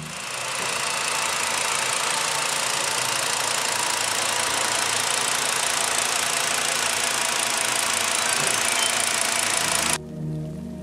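Volkswagen 2.5-litre five-cylinder petrol engine idling steadily, heard close up in the open engine bay.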